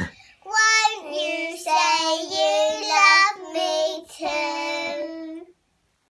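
Young girls singing, holding long notes over a few phrases. The singing cuts off abruptly shortly before the end.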